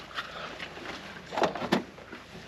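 Handling noises as a fish is moved from a wooden measuring board into a clear plastic weighing tray: light clicks and rustles, then two soft knocks about a second and a half in.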